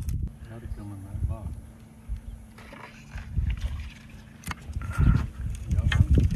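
Faint, indistinct talk over a low rumble of wind and boat handling, with a couple of sharp clicks and a low thump about five seconds in.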